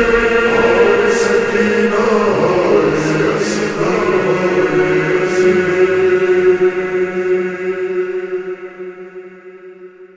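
Noha lamentation chant, slowed down with heavy reverb: long, drawn-out male vocal lines ring on and fade away over the last few seconds as the track ends.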